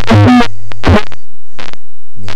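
Distorted lo-fi noise music: a loud, buzzing blurt that bends in pitch in the first half second, and another about a second in, over a crackling electrical hum broken by clicks.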